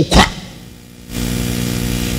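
A man's voice breaks off, then about a second in a steady, even hum made of several flat tones starts up, like a running motor.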